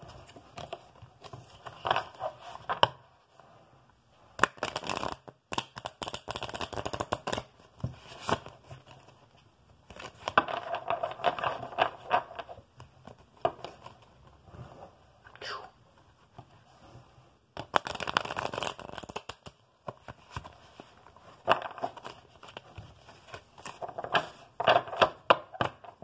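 A deck of tarot cards being shuffled by hand: repeated bursts of rapid flicking and rustling cardstock, with short pauses between the shuffles.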